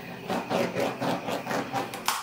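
Hands being wiped on a paint rag: a quick run of rubbing strokes, about five or six a second.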